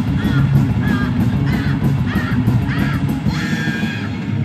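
Live rock band playing loud through a PA: drums, bass and distorted electric guitar, with a run of short high sliding notes repeating about twice a second.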